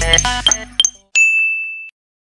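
Background music with bell-like notes ends about a second in, followed by a single bright, held ding sound effect that cuts off just under a second later: a reveal chime marking where the hidden character is.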